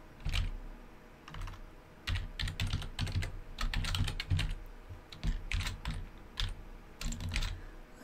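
Typing on a computer keyboard: short, irregular bursts of keystrokes with brief pauses between them.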